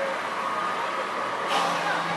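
Outdoor football match ambience: a steady hum with distant players' shouts, and a sudden sharp sound about one and a half seconds in.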